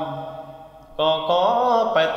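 Traditional Tai (Thái) khắp singing by one voice: a held sung note fades away over the first second, then a new phrase begins about a second in, its pitch wavering and bending.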